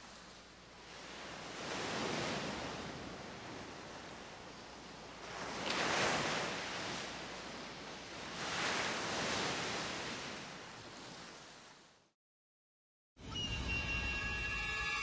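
Sea waves washing onto a shore, three swelling surges at about two, six and nine seconds in, each dying back between. The surf fades and cuts off about twelve seconds in.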